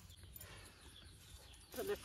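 Quiet outdoor background with nothing prominent, then a woman's voice begins speaking near the end.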